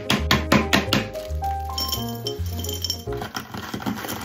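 Background music with a bass line and a simple melody, over a quick run of sharp cracks and clinks in the first second or so and a few more later: a giant hard-candy lollipop being smashed, its shards clinking.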